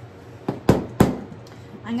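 Three quick, sharp knocks from a small plastic paint cup being tapped, the last the loudest, all within about half a second.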